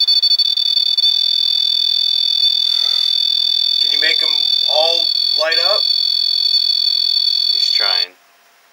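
M-Pod EMF detector sounding its alert: a steady, high-pitched electronic tone made of two close pitches, which cuts off suddenly at the very end as its light goes out. The alert is set off by a change in the field around its antenna.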